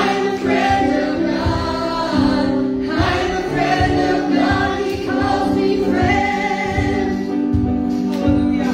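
Live gospel worship song: a woman sings lead on a microphone with a girl singing along, over accompaniment with a steady low beat.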